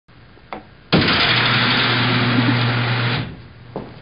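Electric motor whirring with a steady low hum, as of a motorised curtain drawing open; it starts suddenly about a second in and cuts off about two seconds later. A single click comes just before it.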